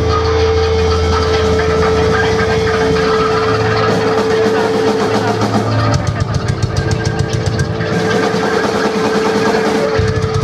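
Loud live rock band: distorted electric guitar and bass with a single note held steadily throughout. The drum kit comes in with a fast beat about six seconds in.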